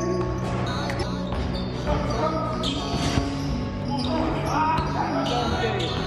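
A basketball bouncing on a wooden gym court, with scattered sharp knocks and players' voices, under background music with a held, stepping bass line.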